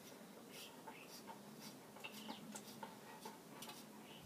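Near silence with faint, scattered light ticks and clicks.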